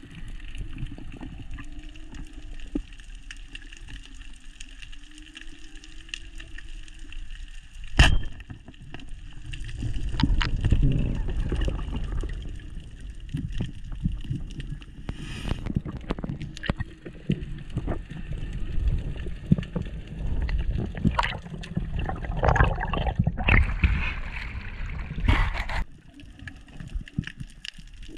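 Muffled underwater sound of a freediver swimming along a reef with a speargun: a low churning rumble of water moving past the camera housing, with scattered clicks. There is one sharp knock about eight seconds in, and the churning grows louder from about ten seconds in as the diver works in close along a rock ledge.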